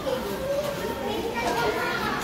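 Indistinct voices of people talking in the background; no other sound stands out.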